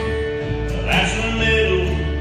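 Live acoustic country music: an acoustic guitar strumming the opening of a song, with a brighter, higher part coming in about a second in.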